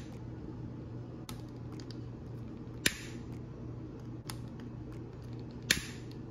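Sharp clicks of a long-reach candle lighter's trigger as it is sparked, a few seconds apart, the loudest about three seconds in and near the end, over a steady low hum.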